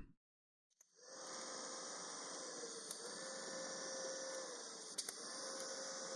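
TIG welding arc buzzing steadily on the go-kart's tube frame, starting about a second in after a moment of silence, its hum dipping slightly a few times.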